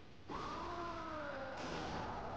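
A long wailing cry from the anime's soundtrack starts a moment in and slowly falls in pitch for over a second.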